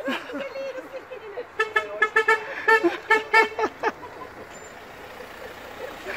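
A vehicle horn honking in a rapid string of short toots for about two seconds in the middle.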